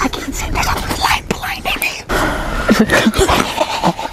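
Several people whispering and talking in hushed voices.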